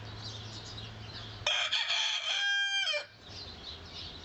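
A rooster crows once, about one and a half seconds in, a call of about a second and a half that drops in pitch at the end. Small birds chirp around it over a low steady hum.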